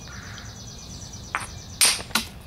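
Quartzite hammerstone striking a flint core: a light knock about one and a half seconds in, then a loud, sharp strike near the end as a flake is knocked off.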